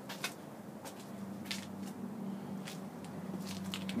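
Footsteps and camera-handling noise while walking: a scatter of soft clicks and crunches about once a second, over a steady low hum.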